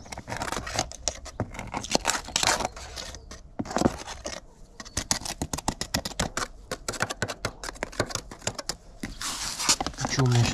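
Metal putty knife scraping quick-setting repair compound out of a plastic tub and onto concrete: a quick, irregular run of short scrapes and clicks.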